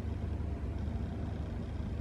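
Steady low background rumble, even throughout.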